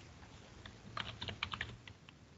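Quiet typing on a computer keyboard: a quick run of about a dozen keystrokes starting about half a second in and stopping near the end.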